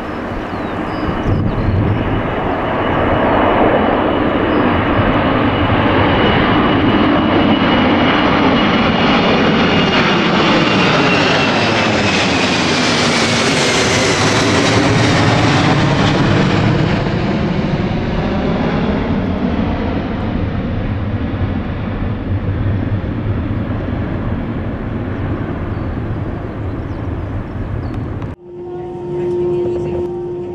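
Boeing 747-400ER's four General Electric CF6-80C2 engines at takeoff power as the jet climbs out and passes overhead: a loud, steady jet noise whose fan whine drops in pitch as it goes over, about halfway through, then slowly fades. Near the end the sound cuts abruptly to a quieter steady hum.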